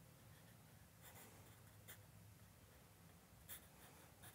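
Faint scratching of a compressed charcoal stick on drawing paper, in a few short strokes, the sharpest about three and a half seconds in.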